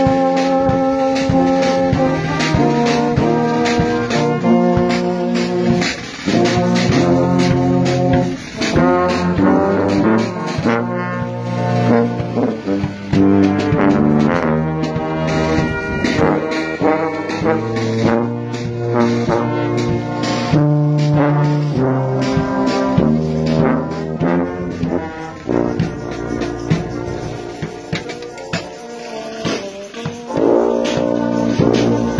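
Marching brass band of cornets and euphoniums playing a tune in full sustained chords, the low brass carrying the bass line, with the notes changing every half second to a second.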